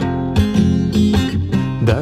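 Acoustic guitar strummed by hand, several chord strokes ringing on.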